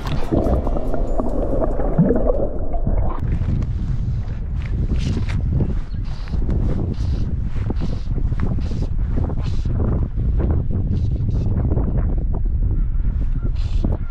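Muffled underwater gurgling heard through a microphone dipped into the river as a rainbow trout is released, with the high end cut off. About three seconds in it comes out of the water into wind buffeting the microphone, with water slapping and splashing against the drift boat.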